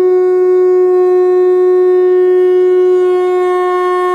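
A conch shell (shankha) blown in one long, loud, steady note at a single pitch.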